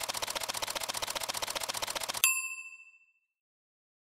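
Title-sequence sound effect: a fast, even clicking, about a dozen clicks a second, stops about two seconds in on a single bright ding that rings out briefly.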